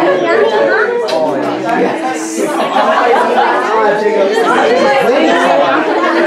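Several people talking over one another at once: continuous overlapping conversation, with no single voice standing out.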